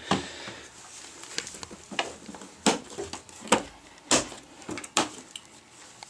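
Scattered light knocks and clicks, about six in the space of a few seconds, in a small tiled room.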